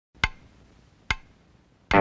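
Three sharp wood-block-like percussion clicks, evenly spaced a little under a second apart, opening a music track; a low, sustained droning chord comes in at the very end.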